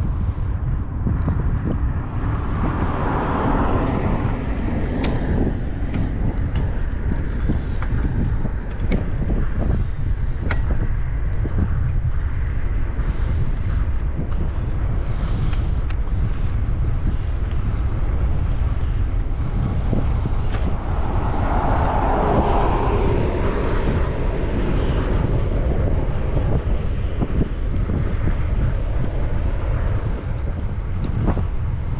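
Wind buffeting a moving bike-mounted camera's microphone during a ride, a steady low rumble throughout. There are two louder swells of a higher sound, about three seconds in and again about twenty-two seconds in.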